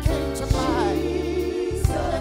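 Live gospel worship music: a woman singing lead with vibrato over a band, with steady bass and drum beats.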